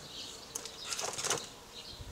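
Crinkling and rustling of packaging being handled: a short crackle about half a second in, then a longer run of crackles around the middle.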